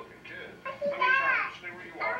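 A young child's high-pitched voice, an exclamation or babble with no clear words, loudest about a second in. It is home-video sound played back through a TV speaker and re-recorded.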